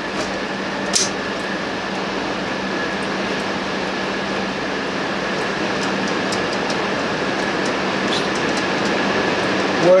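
Steady rain, a continuous even hiss, over a faint constant low hum, with a single knock about a second in.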